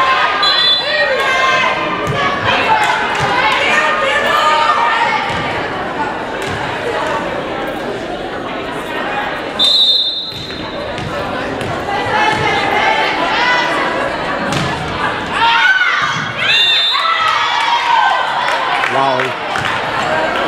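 Volleyball game sound in a gym: players and spectators calling and shouting over one another, with the thuds of the ball being hit. There is a short, shrill referee's whistle about halfway through.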